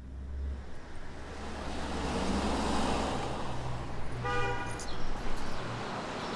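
Street traffic: a vehicle drives past, its engine and tyre noise swelling to a peak and then easing. A short car-horn toot sounds about four seconds in.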